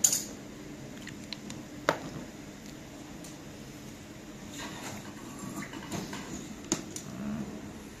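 Hand-tool work on car seats being reupholstered: scattered sharp clicks and knocks as pliers and seat parts are handled. The loudest click comes right at the start, with others about two seconds in and near seven seconds.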